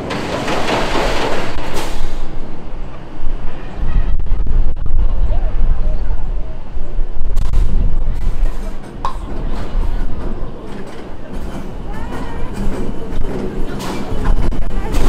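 Premier Rides launched roller coaster train rolling into the station over the brake run. There is a rushing noise in the first two seconds, then a heavy low rumble with clattering from about four seconds in as the cars pass and slow.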